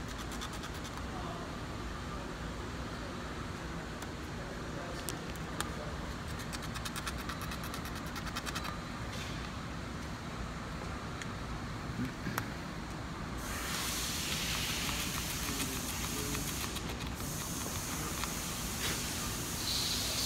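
Hand scraping and rounding over the edge of a guitar fretboard, faint small scratches over a steady background noise. About two-thirds of the way through, a louder hiss comes in.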